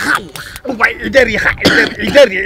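A man crying out and wailing in mock distress, his voice rising and falling in short, broken cries.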